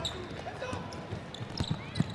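A basketball dribbled on a hardwood court, with a few sharp bounces about midway and near the end, and short high sneaker squeaks.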